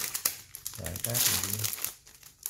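Clear plastic packaging sleeve crinkling as it is handled, a crackly rustle that is loudest about a second in.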